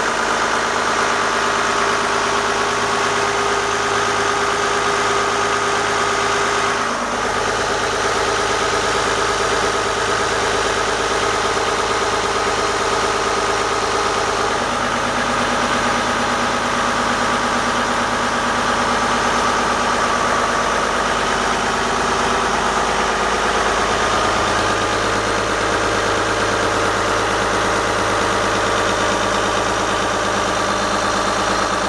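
Volvo Penta KAD42A six-cylinder marine diesel running steadily at idle, heard close up in the open engine compartment, with a slight shift in its tone about seven seconds in.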